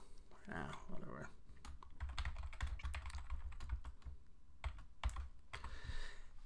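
Typing on a computer keyboard: a quick irregular run of key clicks.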